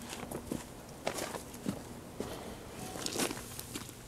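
Footsteps of a person walking over dry leaf and wood-chip mulch: a faint, irregular series of short crunches.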